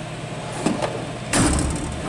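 A drawer of a Matco 6S steel tool chest sliding on its runners, a single push of about half a second near the end, with a light click shortly before it.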